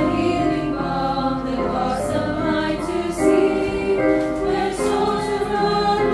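Young women's choir singing a hymn in sustained three-part harmony over a recorded accompaniment.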